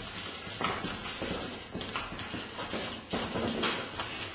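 Two felt-tip markers scribbling on paper, an irregular run of strokes about two a second.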